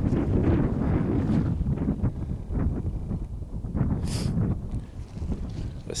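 Wind buffeting the microphone: an uneven low rumble, with a brief hiss about four seconds in.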